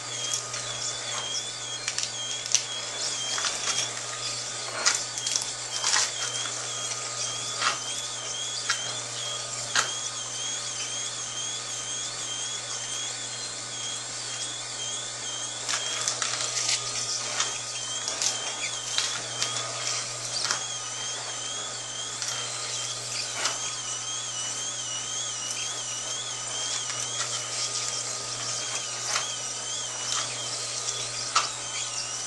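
Green Star Twin Gear juicer running, a slow masticating juicer: a steady motor hum under irregular crackling and snapping as its twin gears crush leafy greens pushed down the feed chute. A faint, high wavering whine comes and goes over the hum.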